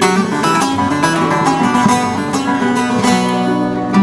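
Acoustic guitar and bağlama (Turkish long-necked saz) playing an instrumental passage of a Turkish folk song, with quickly plucked notes.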